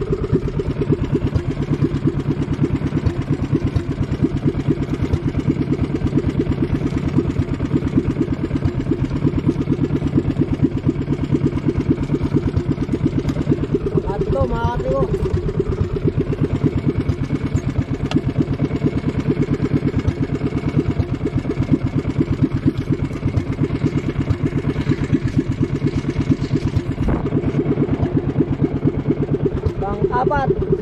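Small engine of a motorized outrigger boat (bangka) running steadily under way, with a fast, even chugging rhythm.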